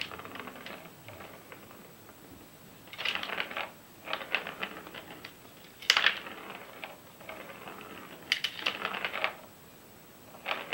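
A plastic ball rolling and clattering through a plastic cat circuit track toy as a cat bats at it: several bursts of rapid clicking, with the loudest knock about six seconds in.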